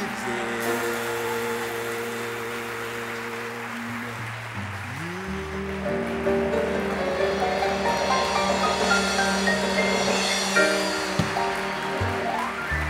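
Live keyboard-led band music: held chords over a low bass note, then a run of notes climbing step by step in the second half, as the closing bars of a song.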